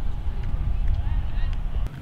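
Low rumbling noise on the microphone outdoors, irregular and strongest in the bass, cutting off abruptly near the end.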